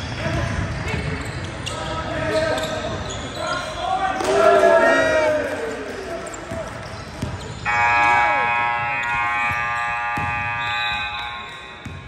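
Gym sounds of a basketball game: the ball bouncing on the hardwood court and players' voices calling out. About eight seconds in, the scoreboard buzzer sounds a steady tone for about three seconds, marking the end of the quarter.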